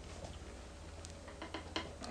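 Plastic cable tie being threaded and pulled through its ratchet: a few faint, scattered clicks over a low steady hum.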